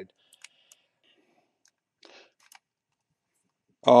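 A few faint computer mouse clicks in the first second, then two softer clicks about two seconds in.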